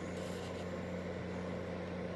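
A steady low hum with a faint even hiss: room tone, with no other event.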